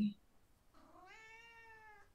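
A faint, drawn-out high-pitched animal call, rising and then slowly falling in pitch for just over a second, starting about halfway in.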